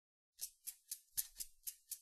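Faint, evenly spaced percussive ticks, about four a second, making a steady count-in at the top of a song.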